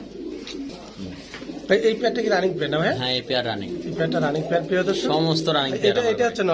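Domestic fancy pigeons cooing, a run of throaty coos that rise and fall in pitch, growing louder about two seconds in.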